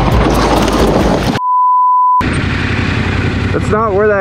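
Steady 1 kHz reference test tone, the 'bars and tone' beep, cutting in abruptly for just under a second with total silence around it. It falls between stretches of rushing outdoor noise.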